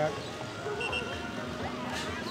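Faint chatter of onlookers' voices around the pitch, with faint music and a brief high tone about a second in.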